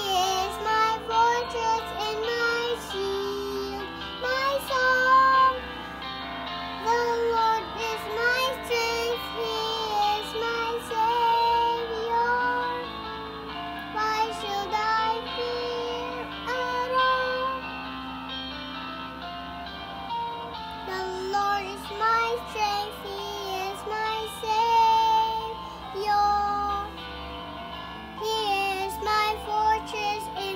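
A young girl singing a solo praise song over instrumental accompaniment, her melody moving and breaking phrase by phrase above sustained backing notes.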